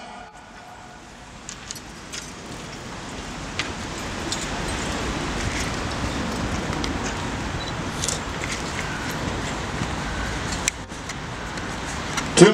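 Steady outdoor city ambience: a low rumble of road traffic that builds over the first few seconds, with scattered small clicks and jingles.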